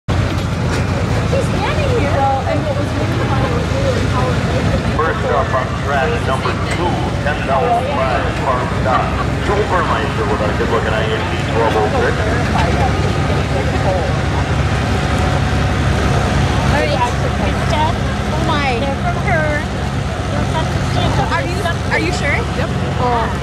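Farmall tractor's engine running steadily under load, pulling a weight-transfer sled at a slow, even pace, with people's voices talking over it.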